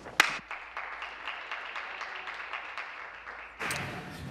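Scattered applause from members in a legislative chamber, a haze of many small claps, opening with one sharp click.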